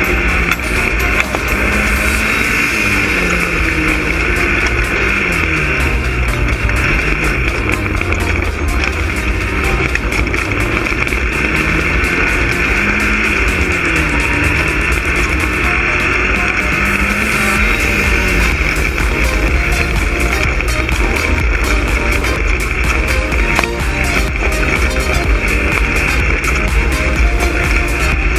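Off-road race buggy engine running hard as the buggy is driven along a dirt track, its revs rising and falling again and again, over a steady loud rush of wind and driving noise.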